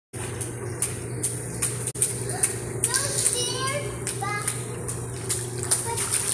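Indoor swimming pool ambience: a steady hum with water noise and scattered splashes, and children's voices calling out in the middle.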